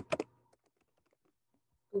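Faint, scattered clicks of typing on a laptop keyboard.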